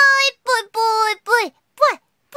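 A woman's high-pitched voice chanting "Pui Pui" over and over in a sing-song way, about five short syllables in two seconds, each rising and then falling in pitch.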